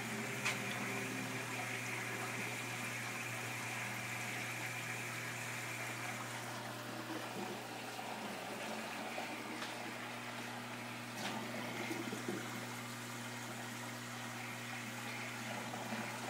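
Aquarium sponge filters bubbling steadily, air lifting water up their uplift tubes, over a steady low hum.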